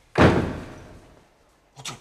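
A door slamming shut once, a sharp bang about a quarter second in that dies away over most of a second.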